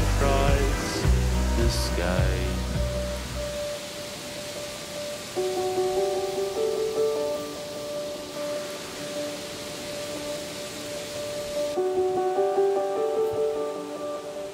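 Background music: a deep bass part drops out about four seconds in, leaving held chords that carry on.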